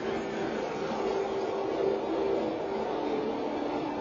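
Soundtrack of a 7D motion-theater ride film played through the theater's speakers: a steady, noisy mix with a few sustained low tones that shift in pitch.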